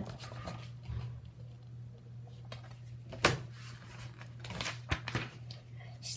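A paper picture book being handled and its pages turned: soft paper rustling with a few sharp taps and flicks, the loudest about three seconds in.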